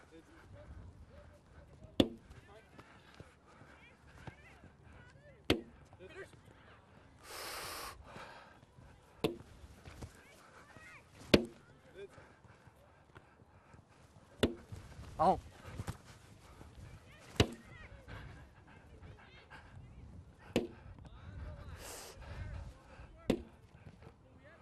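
A ball smacking into goalkeepers' gloved hands as it is thrown and caught around a circle: a sharp slap every two to four seconds, about ten in all.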